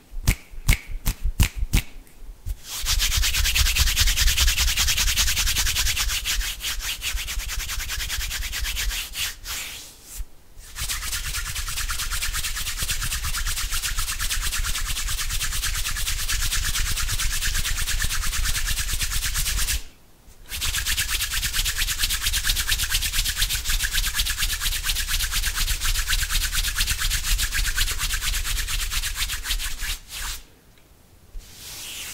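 Bare palms rubbed rapidly together right against the microphone, a dense, fast skin-on-skin rubbing that stops briefly twice. It opens with a run of quick separate clicks from the fingers.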